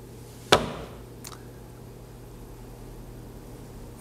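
A single sharp knock about half a second in, followed by a fainter click, over quiet room tone with a low steady hum.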